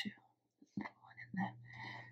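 Mostly quiet, with a few short, faint whispered sounds from a woman's voice spread through the second half.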